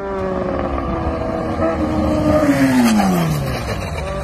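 Motorcycle engine running at speed as the bike comes by, its note growing louder, then dropping steeply in pitch about three seconds in as it passes and moves away.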